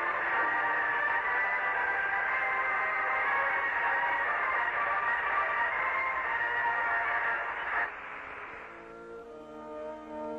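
Music played from a small tape recorder aboard the Apollo 15 lunar module, heard thin and narrow over the spacecraft's radio link. It breaks off abruptly about eight seconds in, and softer, lower music follows near the end.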